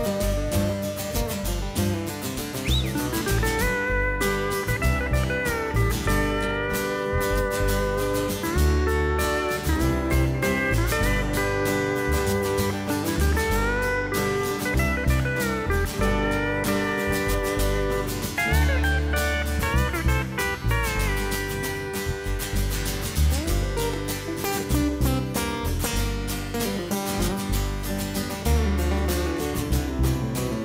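Pedal steel guitar playing a sliding solo, its notes gliding up and down, over strummed acoustic guitars and upright bass in a country band's instrumental break.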